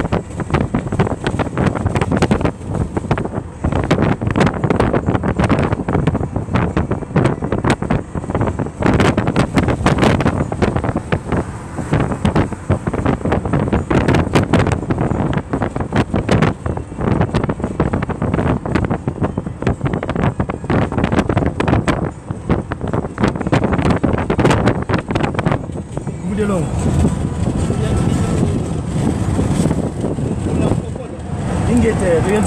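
Wind buffeting the phone's microphone inside a moving car, over road noise and indistinct voices. The buffeting eases about 26 seconds in, leaving a smoother rush of road noise.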